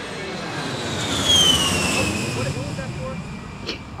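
An aircraft passing over: a rushing noise that swells and fades, with a high whine falling steadily in pitch.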